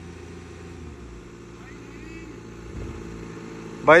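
Engines of two SUVs, a Mahindra Scorpio-N and an Audi Q5, running steadily under full load as they pull against each other on a tow rope in a tug of war.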